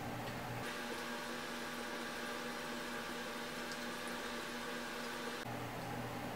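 Steady background hiss and hum with a few faint steady tones and no distinct events. The low hum drops out about half a second in and returns near the end.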